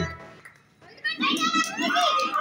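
Music cuts off at the start, then about a second of near silence, followed by a burst of girls' excited shouting and chatter: the music has stopped and the players are rushing for the chairs.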